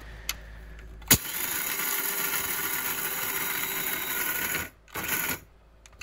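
Electric blade coffee grinder grinding whole coffee beans: a click about a second in, then the motor runs steadily for about three and a half seconds, stops, and runs again in one short pulse.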